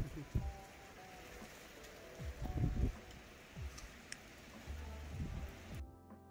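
Steady rain falling, an even hiss with scattered low thumps. Just before the end the rain cuts off abruptly and music takes over.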